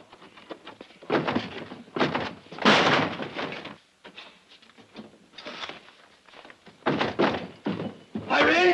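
A series of heavy thumps and knocks as a man forces his way through a wooden door and it bangs open, followed by further thumps as he moves into the room.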